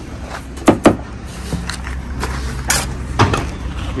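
Steel brick trowel knocking against concrete blocks and scraping mortar: a few sharp clinks, two close together just under a second in and two more in the second half.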